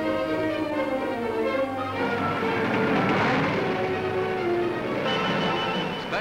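Orchestral newsreel music with strings, swelling to its loudest about halfway through.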